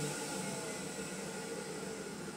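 Electric balloon inflator running steadily, a continuous rush of air as it blows up latex balloons, with no pop.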